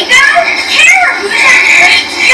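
Cartoon soundtrack with high-pitched, childlike character voices talking, the words not made out.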